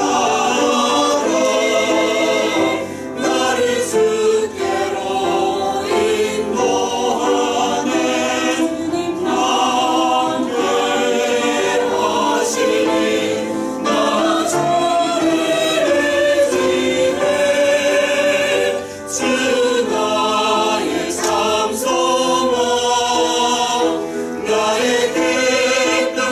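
Mixed church choir of men's and women's voices singing a Korean hymn in parts. The singing breaks briefly between phrases about three seconds in and again near nineteen seconds.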